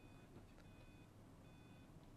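Near silence: room tone, with a faint high electronic beep sounding about three times.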